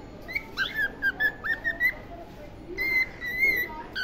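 Cockatiel whistling: a quick run of short chirped notes in the first two seconds, then a few longer, wavering whistles near the end.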